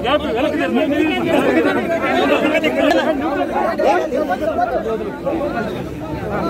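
A crowd of people talking over one another, several voices at once in a steady babble with no single clear speaker.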